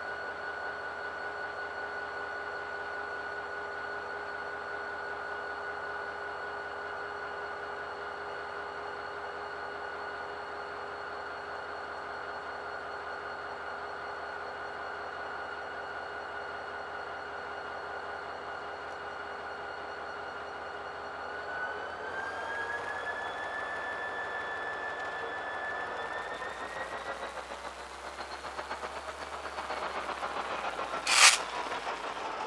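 CSX diesel-electric locomotive running with a steady high whine, then throttling up in two steps, about two-thirds of the way through and again near the end, as it starts to pull away.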